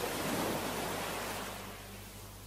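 Sea surf: a rush of a wave washing in that swells up and then fades away over about two seconds.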